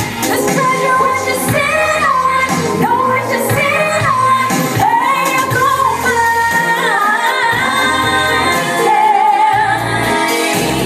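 A woman singing a pop song into a handheld microphone over amplified music with a steady bass, her held notes sliding up and down in pitch.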